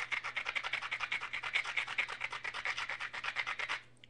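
Abrader rubbed quickly back and forth along the edge of a flint piece, grinding down the striking platform: an even scraping of about a dozen strokes a second that stops just before the end.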